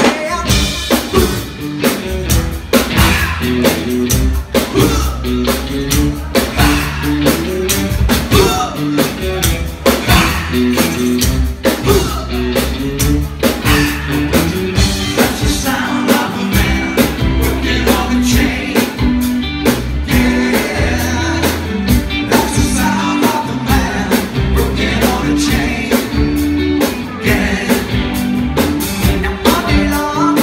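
Live rock and roll band playing with a steady beat: drums, bass and electric guitar, with a man singing into the microphone.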